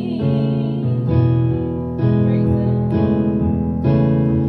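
Electronic keyboard playing held chords, a new chord struck about once a second.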